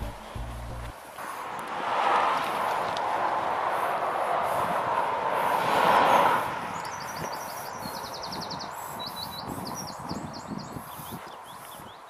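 Cars passing on a busy main road, their tyre and engine noise swelling and fading twice, loudest about two and six seconds in. From about seven seconds in, a small bird chirps in quick runs of notes over footsteps on tarmac.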